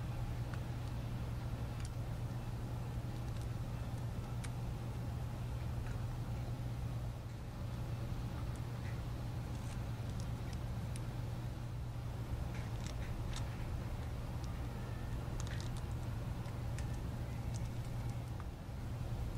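A steady low hum, with faint, scattered small clicks and rustles from fingers handling a phone's circuit board at the power button.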